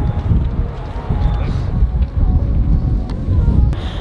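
Wind buffeting the camera microphone in a loud, uneven low rumble.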